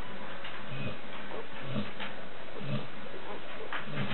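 Week-old Labrador Retriever puppies nursing, giving short low grunts about once a second over a steady hiss.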